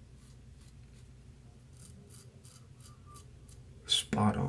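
Double-edge safety razor scraping through lathered stubble in short, quiet strokes, about three a second, with a sharper click near the end.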